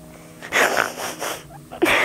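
A woman sobbing: a run of ragged, noisy breaths starting about half a second in, then a sharp gasping inhale near the end.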